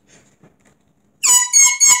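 A child's high-pitched giggle: four short, shrill bursts at one steady pitch, starting a little over a second in, after faint rustling of paper.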